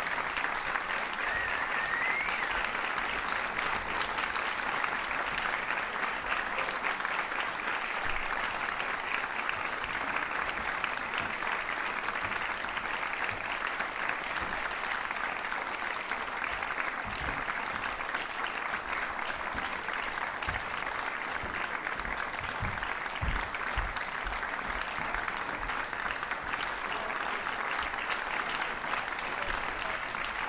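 Audience applauding steadily in a hall, with a short rising whistle about two seconds in.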